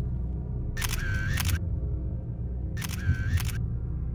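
Camera shutter sound effect twice, each a short run of clicks with a brief whir, about a second in and again near three seconds, over a low, steady music drone.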